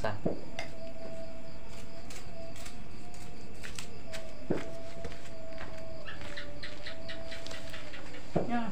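Leaves being folded and handled by hand to wrap sticky rice: scattered light crinkles and taps, one duller knock about halfway, and a quicker run of crinkling near the end. Under it a thin steady tone holds from just after the start almost to the end.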